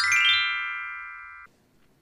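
Chime transition sound effect: a quick downward run of bright ringing notes that pile up into a held chord, fading, then cut off sharply about one and a half seconds in.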